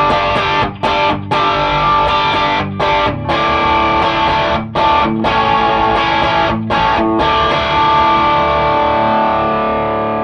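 Gibson SG with humbucking pickups played through a Wampler Cranked OD overdrive pedal into a Matchless Chieftain valve amp and its mic'd 1x12 cabinet. It plays crunchy overdriven chords in a riff with short stops, then ends on one chord left to ring and fade. The guitar's volume is full up.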